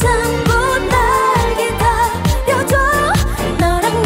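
A woman singing a pop song into a microphone with vibrato, live, over instrumental accompaniment with a steady beat.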